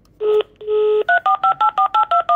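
Phone on speaker placing a call: the Italian dial tone sounds briefly, breaks, then sounds again for about half a second, followed from about a second in by a rapid run of two-tone keypad dialing beeps, about eight a second, as the number is dialed.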